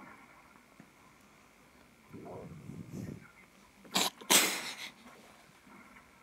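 A person sneezing: a drawn-in breath, then a sharp sneeze about four seconds in.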